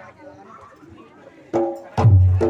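Amplified Reog gamelan music striking up: faint voices and music, then a loud struck percussion note with heavy bass about 1.5 s in that rings away, and a second hit near the end.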